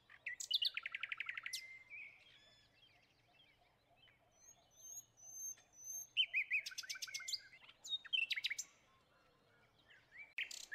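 Songbirds singing outdoors: a phrase with a fast buzzy trill about half a second in, a second phrase of quick varied notes from about six to nine seconds, and thin high notes from another bird in the lull between them.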